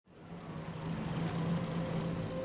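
Early Ford Fiesta's engine idling: a steady low hum that fades up from silence in the first half second.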